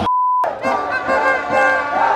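A short censor bleep, a pure steady tone lasting under half a second, covers a word. A crowd of fans singing a chant follows.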